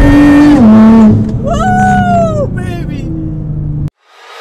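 Nissan R35 GT-R's straight-piped twin-turbo V6 accelerating hard, heard from inside the cabin. The revs climb, then drop with a gear change about half a second in, and after about a second the engine note settles lower and quieter. A man whoops over it, and the sound cuts off just before the end.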